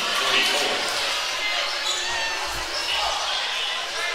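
Indoor gym background: crowd chatter echoing in the hall, with a basketball bouncing on the hardwood floor a few times.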